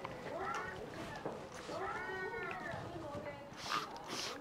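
A hand spray bottle spritzing water onto hair near the end: a short hiss, the loudest sound here. Before it come two drawn-out calls that rise and fall in pitch.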